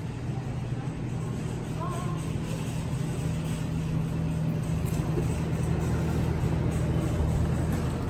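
Shopping cart rolling across a smooth supermarket floor, a steady low rumble that grows slowly louder, over the low steady hum of the store.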